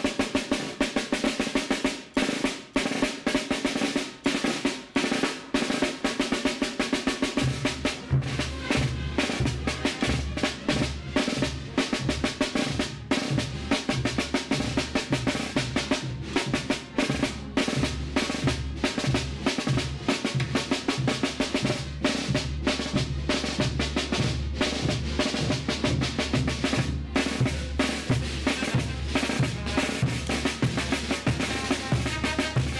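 Snare drum played in a fast morenada rhythm with rolls. About seven seconds in, a band joins with a deep, rhythmic low part of bass drum and tubas under the snare.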